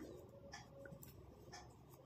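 Near silence, with faint rubbing and a few light ticks of knitting needles and wool yarn as a stitch is worked.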